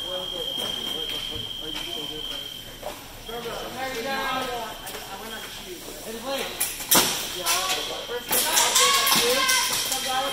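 Fencing blades striking each other during a bout: one sharp metallic clash about seven seconds in, then a quick run of clashes and clicks near the end, over voices.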